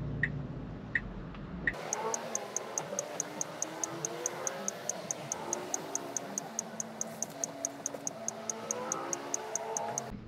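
Car turn-signal indicator ticking about once every three-quarters of a second over a low cabin hum. About two seconds in the sound cuts over to a quicker steady high ticking, four or five a second, with sliding and stepped tones beneath it, like a music track laid over the drive.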